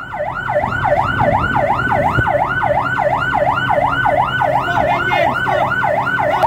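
Patrol vessel's electronic siren in a fast yelp, its pitch swooping down and back up about three and a half times a second without a break.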